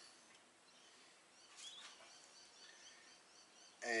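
Quiet room tone, with a few faint, brief high chirps about halfway through.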